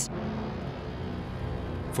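Background music: a steady, low sustained drone with no distinct beat.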